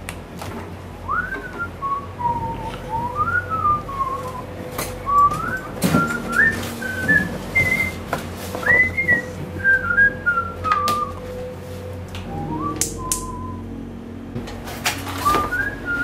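A person whistling a wandering, made-up tune with gliding notes, pausing briefly about three-quarters of the way through. Scattered knocks and rustles come from a refrigerator being opened and a cardboard pizza box being handled.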